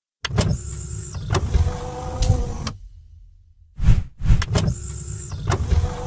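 Mechanical-sounding transition sound effect for an animated box bumper, heard twice: each time a noisy passage with a steady tone and several sharp clicks lasting about three seconds, the second starting about four seconds in.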